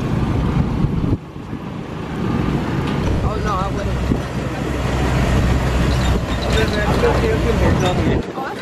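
Engine of an open-air shuttle tram running as the tram drives along, heard from a seat aboard: a steady low hum that builds after the first second or so.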